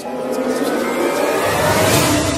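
A rising whoosh sound effect: a noise swell that builds steadily louder over about two seconds, with a deep rumble coming in near the end, laid over sustained background music.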